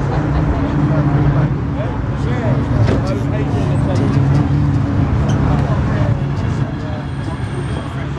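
A vehicle engine running steadily at idle, a low continuous drone, under the chatter of a crowd of people talking.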